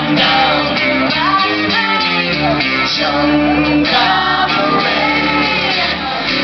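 Live band playing a traditional song: a woman singing lead over strummed acoustic guitar and electric bass.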